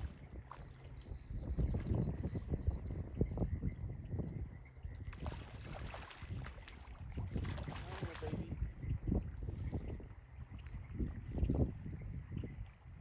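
Wind gusting on the microphone in uneven low rumbles, over the wash of river water. Two short spells of brighter hiss come about five and seven and a half seconds in.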